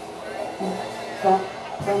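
Live rock band in a quiet stretch of a song: a few short held vocal or instrumental notes over a faint sustained background, then a sharp drum hit near the end as the full kit comes back in.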